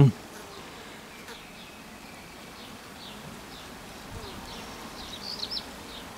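Honeybees buzzing steadily, with a low, even hum.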